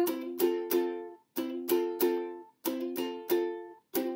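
Instrumental accompaniment: a plucked string instrument strumming chords in a steady rhythm, each chord ringing and fading, with short breaks about a second in and past the middle.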